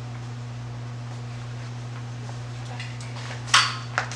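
Scoop stretcher set down onto a padded table: a sudden clatter about three and a half seconds in, then a smaller knock just after.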